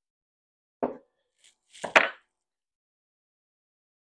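Two short knocks about a second apart as the chainsaw's side cover and bar nuts are worked with a hand tool; the second knock is sharper and louder.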